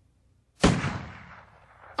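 A single handgun shot about half a second in, sharp and loud, with a long fading echo.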